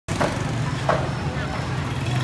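Market ambience: a steady low motor hum with brief snatches of people's voices, once near the start and again about a second in.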